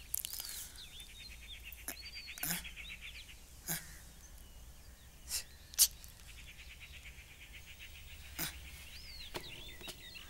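Faint, quiet background: a rhythmic chirring in two stretches, one near the start and one in the second half, with a few short chirps and about six short, sharp sounds scattered through.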